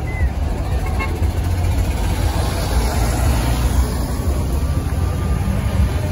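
Low, steady rumble of large vehicle engines as a bus and then a pickup truck drive slowly past close by.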